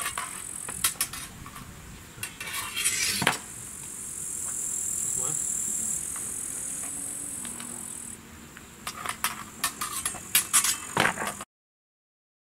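Steel swords and bucklers clinking against each other in a sword-and-buckler drill: a few sharp metallic clinks about a second in, another cluster around three seconds, and a quick run of clinks near the end.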